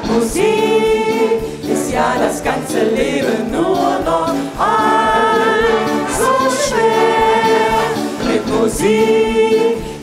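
A small group of singers singing long held chords in close harmony, several sustained chords with short breaks between them.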